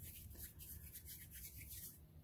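Faint rubbing and soft scratchy handling sounds of hands rolling and pressing a lump of polymer clay.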